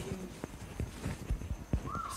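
A few soft knocks, about four spread unevenly over two seconds, in a lull between voices.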